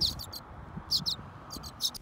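Baby birds chirping inside a wooden birdhouse: short, high chirps in quick little clusters, near the start, about a second in, and again near the end.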